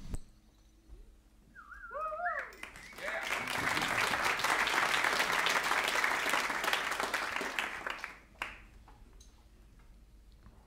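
Audience applause, preceded by a short wavering cheer from someone in the crowd. The clapping swells about three seconds in and lasts some five seconds before dying away.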